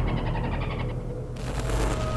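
Cinematic outro sound effects over a low rumble: a fast rattle that fades out, then a sudden bright whoosh about a second and a half in.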